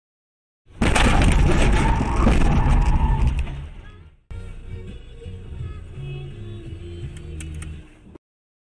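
Car collision picked up by a dash-cam microphone: a loud crash of impact and scattering debris starting about a second in and fading over about three seconds, then a quieter low rumble with a few clicks near the end.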